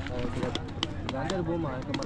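A hand slapping a watermelon to test it for ripeness: several short, sharp knocks, among voices talking.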